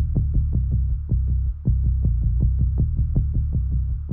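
Tense background music: a low throbbing bass pulse beating rapidly, several times a second, over a steady low hum, with a brief break about one and a half seconds in.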